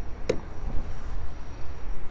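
A single sharp click about a third of a second in, the car's fuel filler flap being pushed shut, over a steady low rumble.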